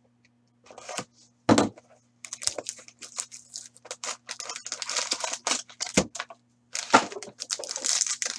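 Crackling and tearing of plastic and foil wrapping as a box of hockey cards is unwrapped and a pack pulled out and opened. A few sharp knocks come from the cardboard box being handled, two of them about one and a half seconds in.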